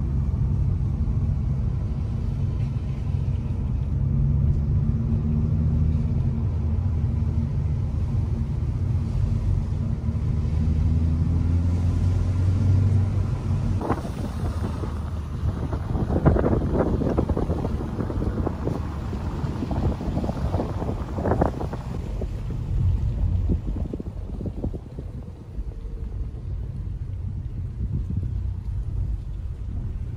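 Interior drone of a 2020 Hyundai Veloster Turbo moving slowly: a steady low hum from its turbocharged four-cylinder engine and tyres, heard inside the cabin. About halfway through, gusts of wind buffet the microphone for several seconds, then ease back to the cabin drone.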